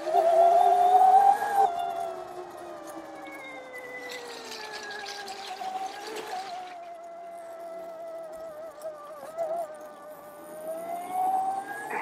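Electric trials bike motor (Oset 24R) whining under way. The whine is loudest and rising in pitch over the first second or two, then quieter, sliding slowly down and back up with the speed. A hiss joins for a few seconds in the middle.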